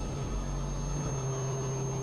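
Experimental synthesizer drone: a steady noisy hum with a thin high whine above it, and a low held tone that firms up about a second in, joined by a higher tone above it.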